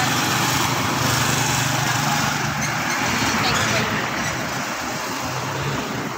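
Motor vehicles passing close by on a road, steady engine and tyre noise that eases off after about four seconds as they go by.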